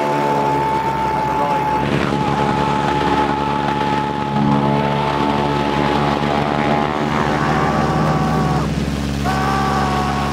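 Radial engine of a Boeing Stearman biplane running steadily in flight, a continuous even-pitched note whose pitch steps slightly a couple of times.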